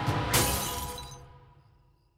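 Cartoon sound effect of something shattering like glass, a sharp crash about a third of a second in that fades away over the next second and a half, over background music.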